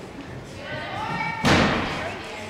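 A single loud bang about one and a half seconds in as a gymnast strikes the vault springboard on takeoff, ringing briefly in the large gym.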